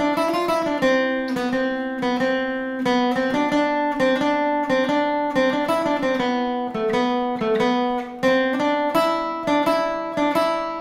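Acoustic cutaway guitar, a Cort, playing a melodic lead lick at normal tempo: a steady run of plucked notes, about three to four a second, that ring into one another.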